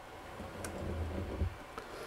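Handling noise at a heat press being opened: a faint low rumble lasting about a second, with a couple of light clicks.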